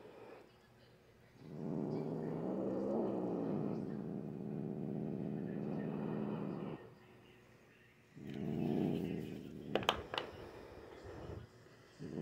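Domestic cat growling: one long, steady growl of about five seconds, then a second, shorter one. She growls because she is scared and upset at being held for a nail trim. A pair of sharp clicks comes about ten seconds in.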